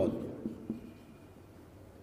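Marker pen writing on a whiteboard, faint strokes just after a man's voice trails off at the very start.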